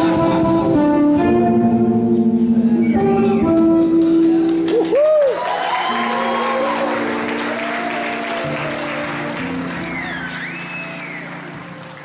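Live band of guitar, bass, keyboard and drums playing the last bars of a song, which ends about five seconds in on a held chord. The audience then applauds and cheers, with a whistle or two, and the sound fades away near the end.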